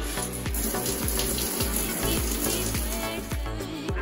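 Shower water running, a steady hiss over background music with a regular beat; the water stops about three and a half seconds in.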